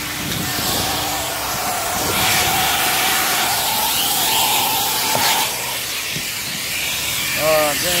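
Shop vacuum running: a steady hiss of rushing air under a motor whine that rises a little and drops away after about five seconds.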